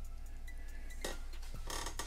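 Faint handling of a plastic dinosaur figure being let go on a display, a couple of soft taps about a second in and near the end, over a steady low hum.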